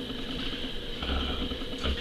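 A pause in talk: steady room noise with a low hum and a constant high hiss, and a brief low swell a little after the first second.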